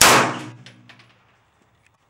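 A single handgun shot: a sharp, loud crack that rings out and dies away within about half a second.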